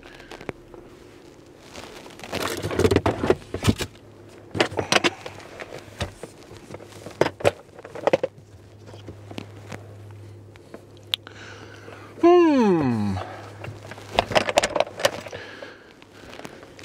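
Camera gear handled inside a car: a series of sharp plastic clicks and knocks from a lens cap and a hard-shell equipment case being worked, with handling and fabric rustle in between. About twelve seconds in, the loudest sound is a short falling vocal groan from the man.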